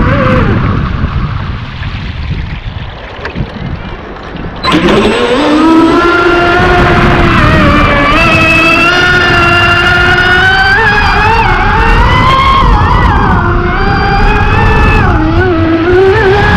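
RC deep-V speedboat heard from on board at speed, at first a rush of water and hull noise. About four and a half seconds in it turns suddenly louder into a high motor whine that climbs slowly in pitch and wavers as the boat runs and turns.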